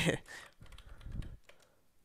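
Faint computer keyboard typing: a few quiet key clicks that stop about halfway through.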